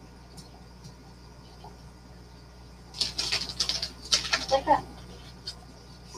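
Paper towel and a plastic container lid rustling and crinkling as they are handled, in a run of short bursts from about three seconds in, after a few seconds of faint room noise with a couple of light clicks.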